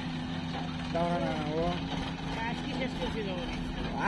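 Diesel engines of a JCB 3DX backhoe loader and a Sonalika tractor running steadily, with voices talking over the engine noise about a second in and again more faintly later.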